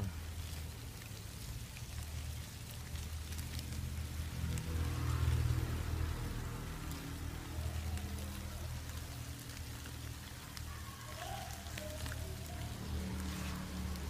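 Soft, rain-like pattering and rustling of a mass of farmed crickets crawling and feeding on water spinach and dry banana leaves, over a low steady hum.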